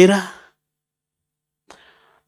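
A man's voice through a microphone finishing a phrase, then silence, with a short faint intake of breath near the end.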